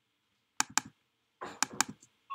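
Two quick double-clicks of a computer mouse, about a second apart, the second pair over a short scuffing noise.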